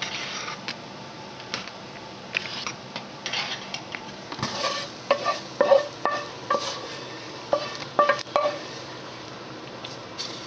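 A metal ladle stirring gumbo in a large stainless steel stockpot, with scraping and splashing, and several sharp ringing clinks of ladle against pot in the second half.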